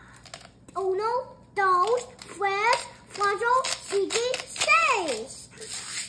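A young child talking in a high voice, the words not clear, from about a second in almost to the end.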